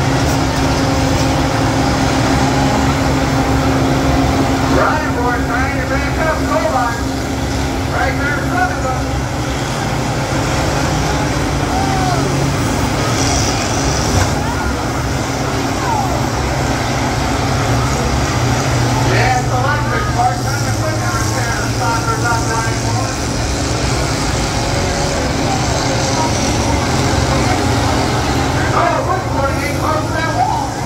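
Several large combine harvesters' diesel engines running together in a steady drone, with voices heard at times over them.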